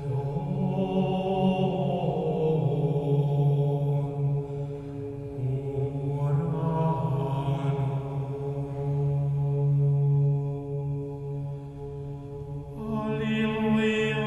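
Slow Orthodox church chant, voices holding long notes over a steady low tone, with a new phrase entering about six seconds in and again near the end.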